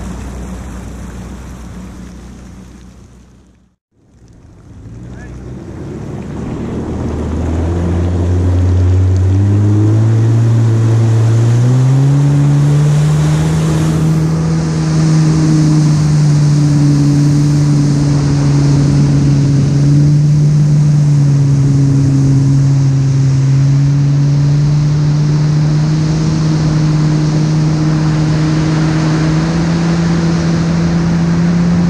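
WaveRunner personal watercraft engine pulling away: after a brief gap about four seconds in, its pitch climbs in steps over several seconds, then holds steady at cruising speed with wind and water spray rushing.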